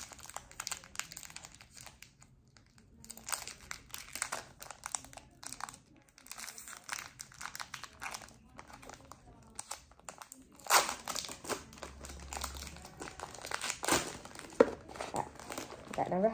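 Foil wrapper of a Pokémon Brilliant Stars booster pack crinkling and tearing as it is worked open by hand. The crackling comes in irregular bursts, louder about eleven seconds in and again near the end.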